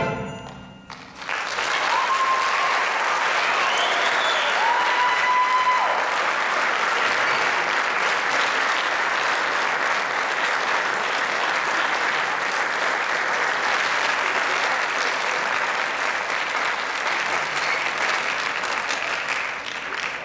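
Audience applause after the concert band's final note rings away. The clapping builds about a second in and holds steady, with a few high whistle-like tones above it in the first several seconds.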